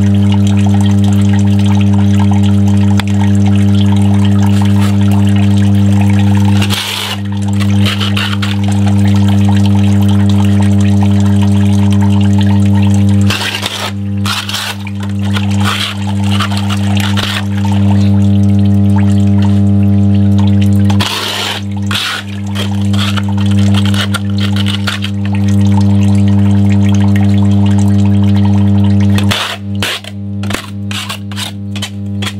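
A loud, steady electrical hum, deep with a higher overtone, runs throughout. It is broken by stretches of scraping and splashing as a flat scraper clears wet leaves off a blocked drain grate in shallow water: about 7 seconds in, again around the middle, and about two-thirds of the way through.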